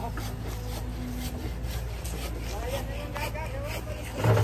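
A mini excavator's engine running steadily in the background, under a quick series of short scraping strokes, about three a second.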